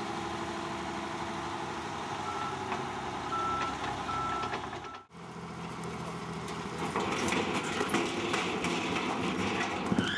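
Tip truck engine running with a reversing alarm beeping four times, a short high beep about every second. Then the tipper tray is raised and its load of soil and rock pours off, a rushing, clattering noise over the running engine.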